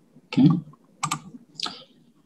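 A few sharp computer keyboard key taps, about a second in and again near the end, advancing the presentation slides.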